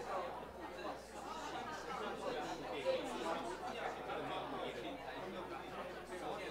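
Indistinct chatter of many people talking at once in a meeting room, with no single voice standing out.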